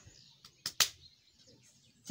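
A few short, sharp clicks just over half a second in, the last the loudest, with a faint high chirp at the very start.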